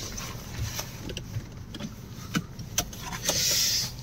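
Inside a Honda car's cabin: a low steady rumble with scattered light clicks and knocks, and a brief hiss about three and a half seconds in.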